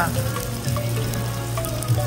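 Food sizzling on a Korean barbecue tabletop grill, a steady sizzle over a low hum.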